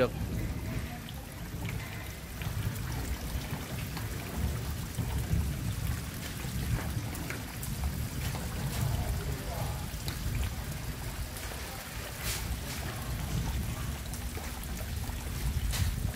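Outdoor pond-side ambience after heavy rain: an uneven low rumble with a faint wash of trickling water.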